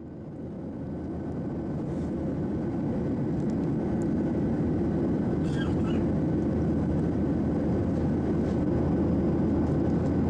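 Airliner cabin noise: the steady low roar of the jet engines and airflow heard from inside the passenger cabin, fading up over the first few seconds and then holding steady.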